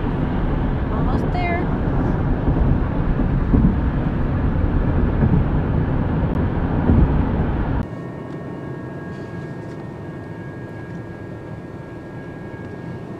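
Car interior at freeway speed: steady road and tyre noise. About eight seconds in it drops abruptly to a much quieter bed with faint, steady high ringing tones from a railroad crossing's warning signal, the car waiting at the lowered gates.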